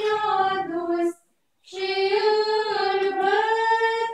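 A choir of Orthodox nuns singing a church hymn in unison, unaccompanied. The singing breaks off for about half a second roughly a second in, then resumes.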